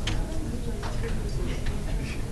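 Light, irregular clicks of a stylus pen tapping on a pen display or tablet while handwriting, over a steady low room hum.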